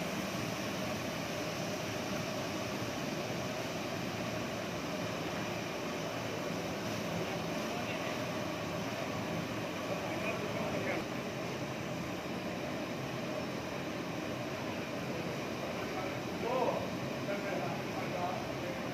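Steady, even background noise in a busy kitchen, with faint indistinct voices of people working now and then; the pouring of the ingredients into the pot does not stand out.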